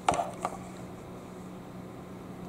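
Two short clicks about half a second apart, right at the start, as the power bank's button is pressed by hand; after that, quiet room tone with a faint steady low hum.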